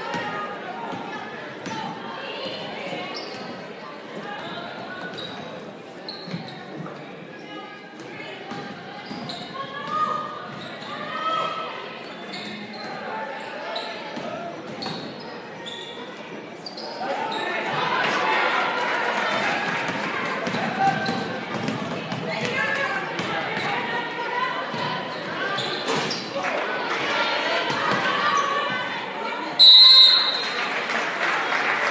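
A basketball dribbling and bouncing on a hardwood gym floor in a large echoing hall, over spectators' voices that swell into louder shouting a little past halfway. A short shrill referee's whistle blast right at the end.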